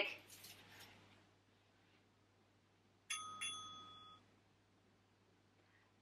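Workout interval timer sounding its final beep to signal that time is up: two quick high electronic dings about a third of a second apart, ringing on and fading over about a second.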